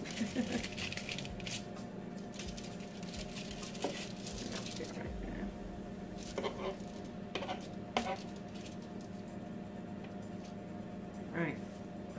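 Aluminium foil crinkling as its edges are pressed and folded up around a baking tray, crackling densely for the first few seconds, then a few single light clicks and taps against the metal tray, over a steady low hum.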